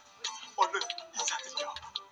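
Soft drama background music with light ticking notes and a brief voice sound.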